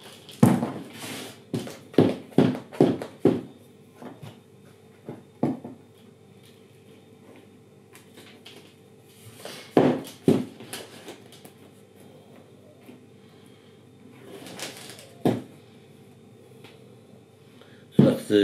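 Plastic plant pots knocking against a tabletop while compost is filled and firmed around a tomato seedling: a quick run of about six knocks in the first few seconds, then single or paired knocks around the middle and near three-quarters through.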